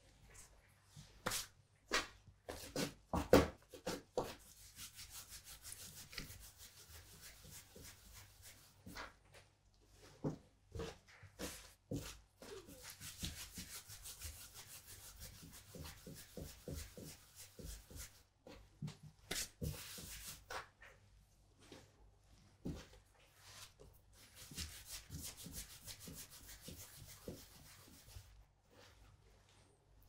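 Hands rounding small balls of bread dough on a floured wooden worktop: faint rubbing in stretches, with scattered soft taps and knocks, the loudest a few seconds in.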